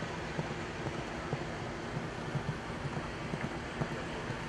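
Steady outdoor background noise with wind on the microphone, a faint steady low hum, and scattered soft low thumps at irregular intervals.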